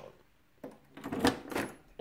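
The key working the seat lock of a Sachs Speedjet RS scooter, with a bunch of keys jangling and plastic clattering in a few short bursts from about half a second in, as the helmet-compartment seat is unlatched.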